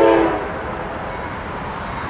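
Locomotive air horn sounding one short blast at the start, a chord of several steady notes, over steady background noise as the train approaches.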